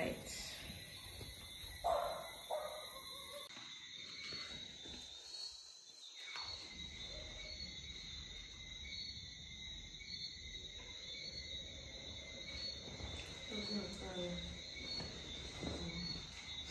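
Quiet room tone with a steady, high-pitched chirring of insects in the background.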